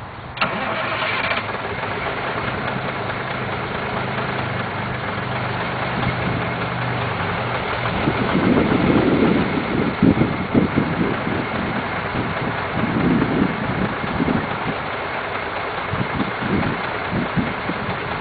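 1987 Freightliner cab-over's Cummins diesel engine starting: the starter whines briefly about half a second in and the engine catches at once. It then runs steadily and gets louder and more uneven from about eight seconds in.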